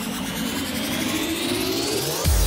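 An electronic riser in the soundtrack: a whooshing sweep that climbs steadily in pitch, building up to the music.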